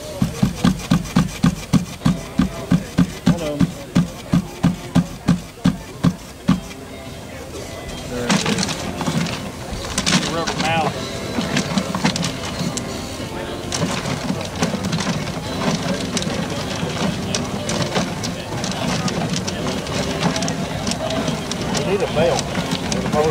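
Clear acrylic raffle drum full of paper tickets being hand-spun, the tickets tumbling and sliding inside. A rhythmic knocking about three times a second fills the first six seconds, then gives way to a steady rushing tumble.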